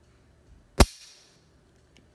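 A single sharp click about a second in: a semi-automatic pistol dry-fired, the trigger breaking and the hammer falling on an empty chamber.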